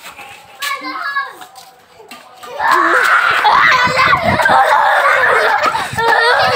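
Children shrieking and yelling at play: a short high call about a second in, then loud, continuous overlapping screams from about two and a half seconds in.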